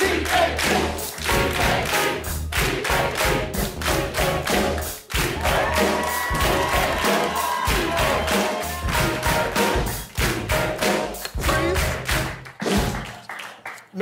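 Live band playing an upbeat tune with a heavy bass line and a strong, steady beat, with some held notes near the middle.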